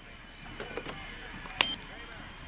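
A cordless phone handset being picked up and handled amid faint rustling of bedding, with a short sharp click about one and a half seconds in.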